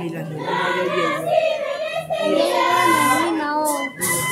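A group of pastoras, women and girls, singing together in chorus: a high sung melody carried by many voices.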